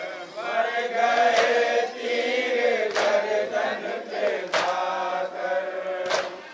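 A group of men chanting a noha refrain together in long, sustained lines, with a sharp unison chest-beating slap of matam about every second and a half, three times.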